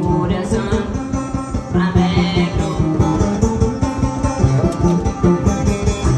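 Live band music led by a plucked banjo, over a steady drum beat and bass line.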